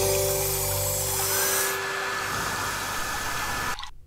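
Intro music under a logo animation: held tones over an airy hiss, with a higher steady tone joining about a second in, all stopping abruptly just before the end.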